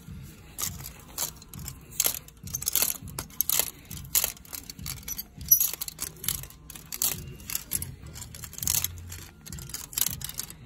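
Clothes hangers clicking and scraping along a store rack rail as hanging garments are pushed aside one by one, in irregular sharp clacks about twice a second.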